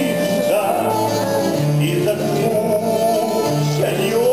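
Live folk ensemble music: accordion and acoustic guitars playing held chords over a moving bass line, with voices singing.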